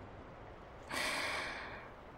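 A woman's soft exhale, starting about a second in and trailing off over about a second.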